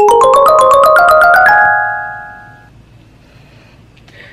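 Closing flourish of a channel intro jingle: a quick rising run of bright, bell-like mallet notes, about eight a second, that ring on together and fade out within a couple of seconds, leaving faint room tone.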